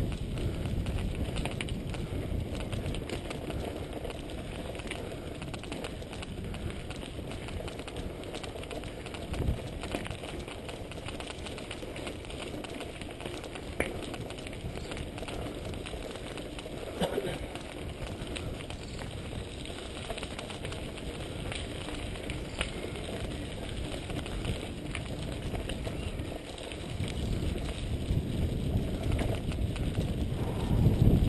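Mountain bike rolling over a dirt and gravel track: steady tyre and ride noise with wind on the microphone, a few sharp knocks as it goes over bumps, and the wind rumble growing louder near the end.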